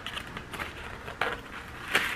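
Faint rustling and scraping as a phone case's cardboard box is handled and opened, with a couple of soft swishes.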